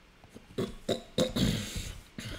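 A few sharp keystrokes on a computer keyboard as a search word is typed, then a louder rough noise lasting about half a second near the end.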